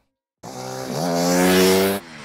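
Dirt bike engine revving, starting about half a second in, its pitch rising and then holding steady as it grows louder.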